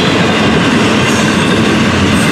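Double-stack intermodal well cars of a Florida East Coast Railway freight train rolling past: a loud, steady noise of steel wheels on rail.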